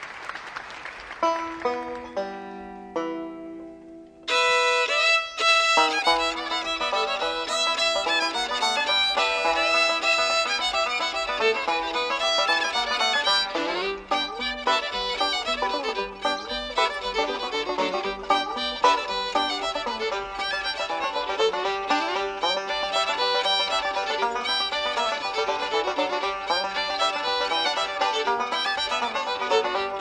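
Live bluegrass instrumental duet of fiddle and five-string banjo. Brief applause fades out, a few long lead-in notes follow, and about four seconds in the two instruments launch into a fast tune together.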